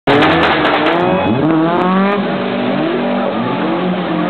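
Rally car engines revving hard, their pitch rising and falling again and again as the cars slide on wet tarmac.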